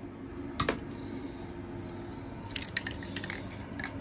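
A few light clicks and taps, then a quick flurry of small clicks near the end, over a steady low background hum.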